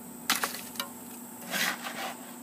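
Handfuls of wet concrete mix scraping and dropping into the hollow core of a concrete block: two short gritty sounds, the first and louder about a third of a second in, the second about a second and a half in.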